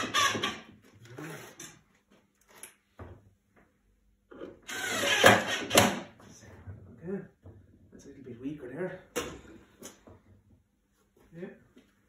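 Cordless drill-driver driving short 4 x 30 screws up through the underside of a floating shelf, in short bursts; the longest and loudest comes about five seconds in.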